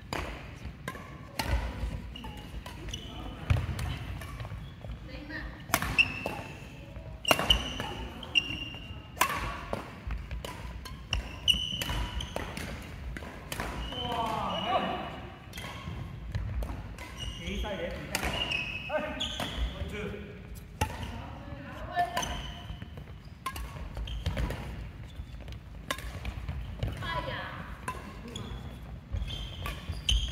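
Badminton rally on an indoor wooden court: sharp racket strikes on the shuttlecock at irregular intervals, short high squeaks of court shoes on the floor, and players' voices now and then, all echoing in a large hall.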